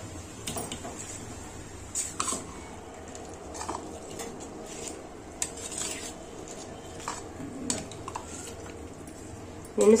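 A steel ladle clinking now and then against a steel pot and bowl as soaked rice is scooped up and dropped into water, with about seven light clinks spread across a low steady background.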